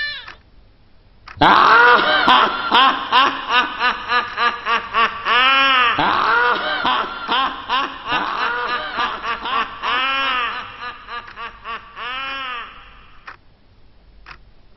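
A person laughing in a long run of quick, pitched "ha" syllables that rise and fall, starting about a second and a half in and dying away near the end.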